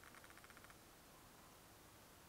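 Faint, rapid patter of tiny scratchy ticks from a dense foundation brush working liquid foundation into the skin of the cheek, lasting under a second, otherwise near silence.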